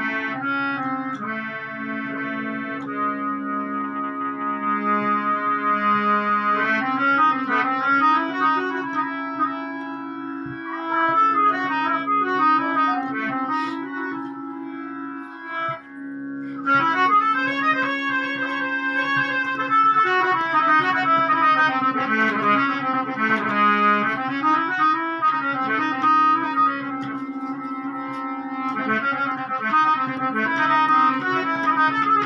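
Harmonium played solo: a steady drone note held beneath fast melodic runs, with a brief drop-out about halfway through.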